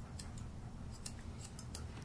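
Straight grooming shears snipping through a standard poodle's leg coat: several quick, light snips at an uneven pace.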